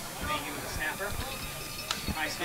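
Faint field-side voices from spectators and players, with a single sharp click just before the end.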